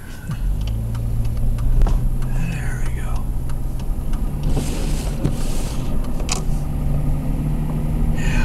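Car engine running, heard from inside the cabin as the car drives off on a snowy street. Its low, steady hum rises a little in pitch about halfway through. A brief hiss follows, and a few faint clicks sound through it.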